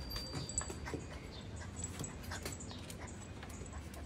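Faint sounds from a basset hound puppy, mixed with scattered light clicks and rustling as a fabric dress is pulled on over it.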